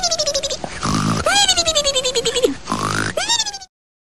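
A loud animal call repeated three times: each cycle is a short harsh rasping stretch followed by a long call that falls slowly in pitch. The last call is cut off abruptly near the end.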